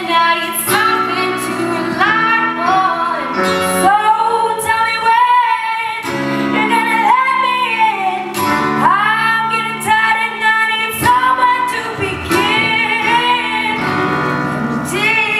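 Teenage girl singing a melody with long held notes, accompanied by an acoustic guitar.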